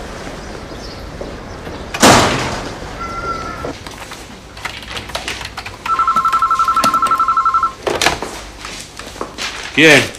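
Telephone ringing: one warbling electronic ring of under two seconds, about six seconds in. A loud thud comes about two seconds in.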